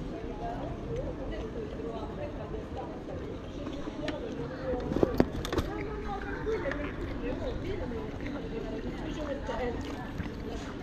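Murmur of other people's conversation in the background, with a few sharp knocks about five seconds in as the camera is handled and moved.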